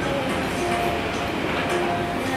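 Steady background noise of a busy restaurant, with faint music.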